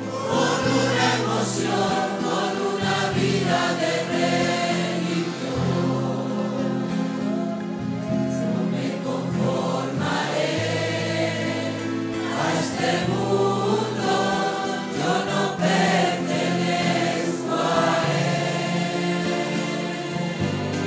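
A congregation singing a Spanish-language worship song together, many voices as a choir, over instrumental accompaniment with sustained low bass notes.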